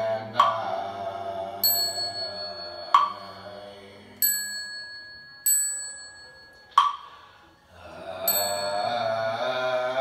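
A group chanting a Buddhist sutra in slow, sustained tones, punctuated by three sharp knocks and four struck bells that ring on with long, high tones. The chanting fades away through the middle, leaving the bell and knocks, and comes back in near the end.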